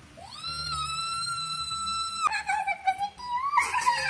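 A high-pitched voice holds one long, steady note for about two seconds, then breaks into shorter wavering sung notes.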